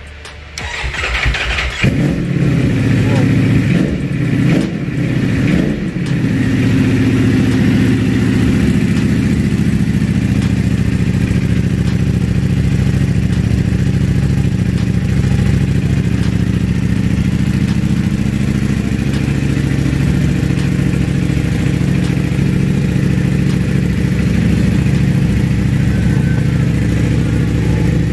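Ducati Panigale V4 motorcycle's V4 engine being started on the button: a short burst of cranking, then it catches about two seconds in. It revs briefly a couple of times and then settles into a steady, even idle.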